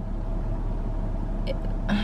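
Car idling, heard from inside the cabin: a steady low hum with a faint steady tone above it.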